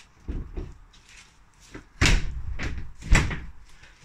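A soft knock, then about two seconds in a longer rushing slide that ends in a loud slam just after three seconds, as a door on an Invacar invalid carriage is pulled along and shut.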